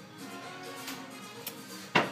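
Music playing in the background, held notes at a moderate level, with one sharp knock just before the end.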